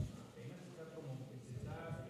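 Quiet room tone in a pause between speakers, with a faint voice briefly audible near the end.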